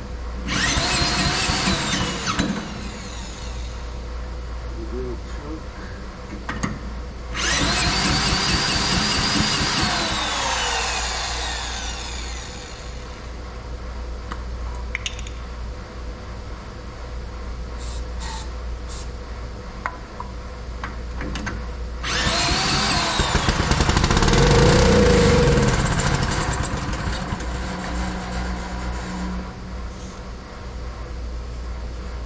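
Cordless drill spinning the cement mixer's small single-cylinder gasoline engine over in three bursts, each winding up and then running down, with short aerosol sprays in the quiet between. The engine does not start and run: a sign of a carburetor problem, probably a blocked jet.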